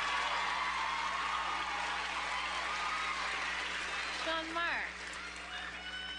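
Studio audience applauding and cheering, dying down about four seconds in, followed by a brief voice.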